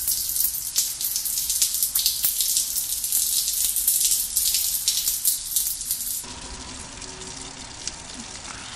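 A man urinating into a toilet: a steady, crackly hissing splash of the stream into the bowl, which stops abruptly about six seconds in and leaves a quieter hiss.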